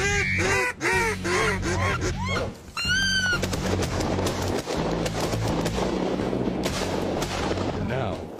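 A duck call blown in a quick run of quacks, about two to three a second, then one longer call. About three and a half seconds in, a burst of rapid shotgun fire from several guns follows, the shots overlapping into a continuous volley, with background music underneath.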